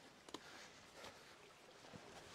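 Near silence: faint outdoor background with a soft click about a third of a second in.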